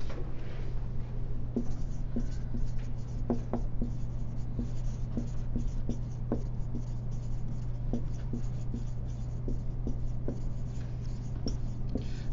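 Writing: a pen or marker making short, irregular scratches and taps, over a steady low hum.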